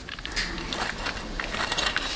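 Hot cooking oil sizzling and crackling in a kadhai, with scattered light clicks, as fried chicken pieces are lifted out with a wire skimmer.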